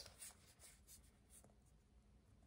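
Near silence with a few faint, light clicks and rubs of tarot cards being handled in the hand.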